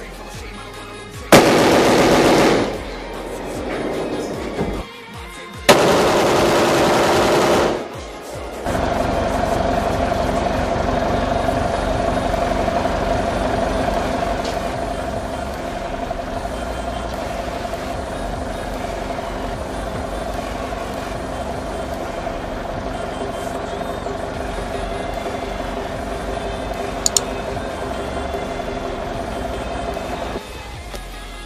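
Two long bursts of automatic gunfire, the first about a second long and the second about two seconds, a few seconds apart. From about nine seconds in, steady music with several held tones.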